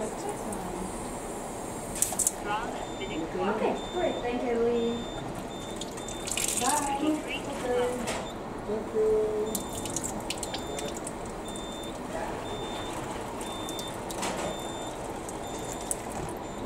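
Water running steadily from the flexible spout of an Enagic LeveLuk (Kangen) water ionizer into a plastic cup in a sink. The machine is on its strong acidic setting, which also puts out a pH 11.5 alkaline stream.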